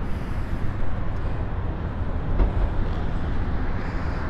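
2018 Harley-Davidson Tri-Glide's 107-cubic-inch fuel-injected Milwaukee-Eight V-twin idling through aftermarket slip-on mufflers: a steady, low, pulsing exhaust beat.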